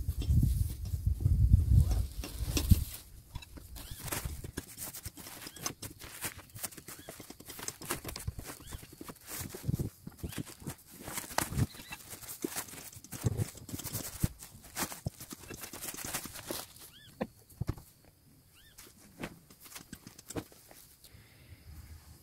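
Scattered rustles, light knocks and clicks of camping gear being handled while a mattress is put into a dome tent. A low rumble fills the first few seconds, and the handling noises thin out to near quiet near the end.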